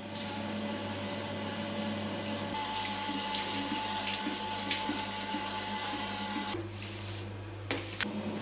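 Handheld shower spraying water against the tiled walls and glass screen, a steady rushing hiss as soapy cleaner is rinsed off; the spray gets softer and duller near the end, with a brief click just before the end.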